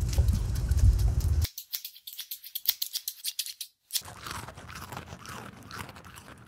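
A corgi's paws on pavement over a loud low rumble, then a quick run of sharp, crisp crunches of the corgi chewing, followed by quieter, softer mouth sounds.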